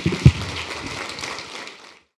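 Audience applauding, a dense patter of clapping that dies away near the end, with one low thump about a quarter second in.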